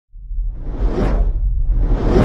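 Cinematic whoosh sound effects over a deep, loud rumble: one swell rises and falls about a second in, and another builds near the end.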